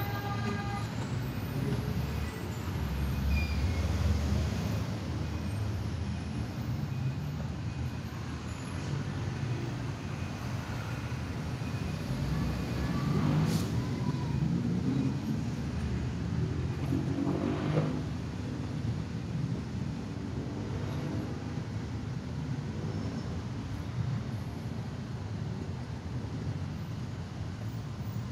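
Road traffic noise: cars, motorbikes and trucks in slow, congested traffic, a steady low rumble, with a couple of brief louder vehicle sounds near the middle.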